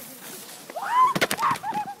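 Two skiers colliding and falling in the snow: a brief clatter about a second in, with short high-pitched cries around it.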